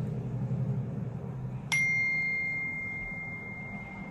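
A kitchen appliance timer bell dings once, just under two seconds in: a single struck, clear tone that rings on and slowly fades. A low steady hum runs beneath it.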